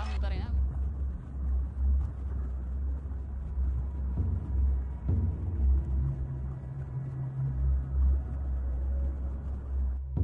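A deep, surging low rumble, muffled with almost nothing high in it. A steady low hum joins in about six seconds in and fades again.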